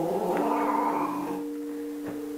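Domestic cat giving a long, drawn-out aggressive growling yowl that fades away a little over a second in. A steady two-tone hum then comes in.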